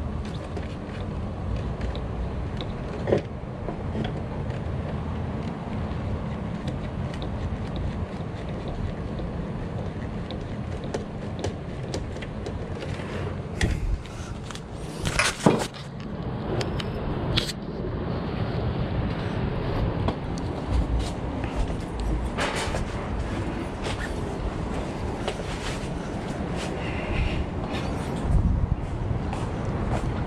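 Handling noises at an open electrical panel: scattered clicks and knocks as wiring and a circuit breaker are moved by hand, with a sharp cluster about halfway through, over a steady low background rumble.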